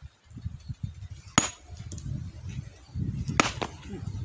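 Two sharp blows of a small sledgehammer on a boulder, about two seconds apart, the second followed by a short ring. The blows split a slab of stone off the rock.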